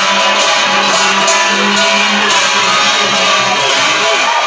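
Loud music with a steady beat.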